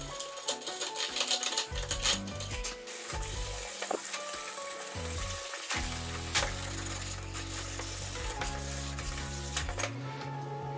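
A blade scrapes and shaves the rough edge of a hole cut in a wooden board in quick, scratchy strokes. After about six seconds, sandpaper rubs the edge of the hole. Background music plays throughout.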